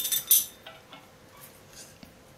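A steel chain sprocket lifted off a bicycle wheel hub, giving a few sharp metallic clinks in the first half-second, followed by faint handling and a light ringing.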